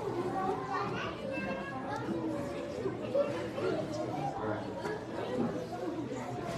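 Indistinct chatter of many children's voices, with no single voice standing out.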